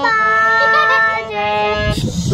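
A girl singing a bandish in raag Asavari, accompanying herself on harmonium: a held vocal note that bends gently in pitch over the harmonium's sustained reed tones.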